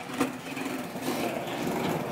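Skateboard wheels rolling over smooth concrete, a steady rolling rumble that grows slightly louder, with a light click near the start.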